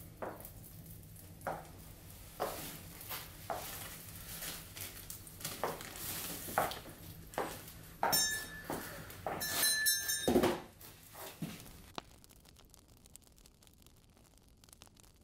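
Scattered light knocks and clicks of someone moving about a room, with a brief high metallic ringing twice, about eight and ten seconds in.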